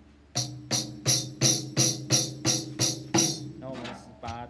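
Orchestral tambourine with a skin head struck by hand nine times, about three strikes a second, each a low drum thud with its metal jingles ringing. This is its pitch with the head gone slack, before the head is tightened.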